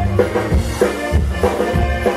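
A live Tejano band playing, with a button accordion over electric bass and drums keeping a steady beat.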